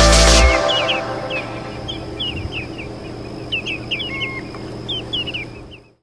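Background music stops about half a second in. A flock of shorebirds then calls: many short, high notes in quick, overlapping runs, fading out near the end.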